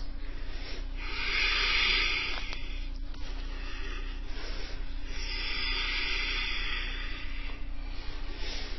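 Slow, audible breathing: two long breaths, each a soft hiss that swells and fades, about four seconds apart, over a low steady hum.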